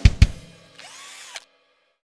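End of a drum-driven intro jingle: two sharp drum hits, then a short electronic sound effect whose pitch rises and falls before it cuts off suddenly about three-quarters of a second in.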